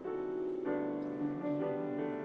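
Piano played by a caller over a phone line: a slow, tender piece of sustained chords, with a new chord struck about two-thirds of a second in. A low note with a slow, even waver joins about a second in.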